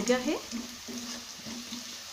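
Chopped onion, garlic and green chilli sizzling in hot oil in a stainless steel pressure cooker, with a wooden spatula stirring through them. The onions have just turned colour in the oil.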